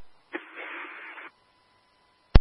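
Two-way fire radio channel keyed open with no voice: about a second of static hiss that starts and cuts off abruptly.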